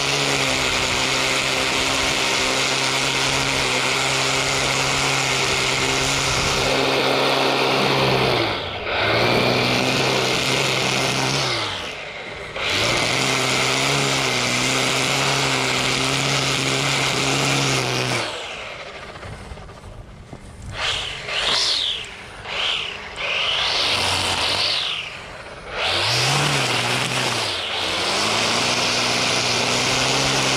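Husqvarna 325iLK battery string trimmer with .080 square line edging turf along concrete: a steady motor whine under the hiss of the line cutting the grass edge. The motor eases down and spins back up twice a third of the way in. It then drops off for several seconds with a few short bursts of throttle, and spins back up to full speed near the end.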